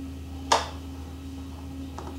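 Electric potter's wheel running with a steady low hum while it spins, with one short, sharp noise about half a second in.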